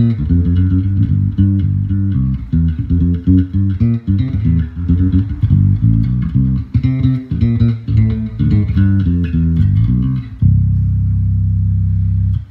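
Sire M7 5-string electric bass played with the neck pickup in single-coil mode and the bridge pickup in parallel, giving a clear, concise tone. A fast run of plucked notes ends about ten seconds in on one held note that rings on.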